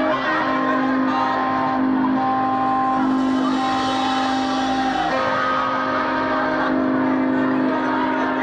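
Live rock band playing sustained chords: a steady low drone held throughout, with higher held notes shifting every second or two.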